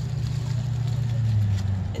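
A steady low engine hum, dipping slightly in pitch in the second half.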